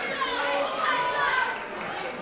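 Wrestling crowd shouting and chattering, many voices at once, with children's high voices prominent among them.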